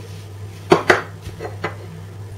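A few sharp knocks and clinks of kitchen containers handled on a granite countertop: two close together about three-quarters of a second in, then two fainter ones.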